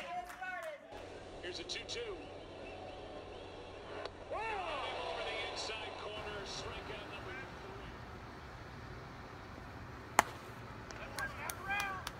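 Spectators' voices at a baseball game, with a louder call about four seconds in, and one sharp knock about ten seconds in.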